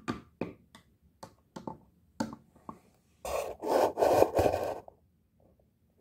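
A toy horse figurine's hooves tapping on a glass mirror in an uneven walking rhythm, imitating hoofbeats, followed about three seconds in by a louder scraping rub lasting under two seconds.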